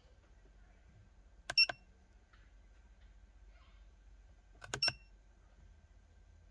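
Two short electronic key beeps from a Foxwell AutoMaster Pro OBD scan tool, each a click with a high tone, about three seconds apart, as the Erase (F3) command for the stored fault codes is entered. A faint low hum lies underneath.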